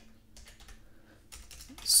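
Quiet typing on a computer keyboard: a few soft, scattered keystrokes.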